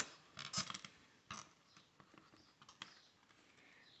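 Faint, scattered rustles and light clicks of hands handling a beaded polypropylene-cord bracelet and cord on a clipboard.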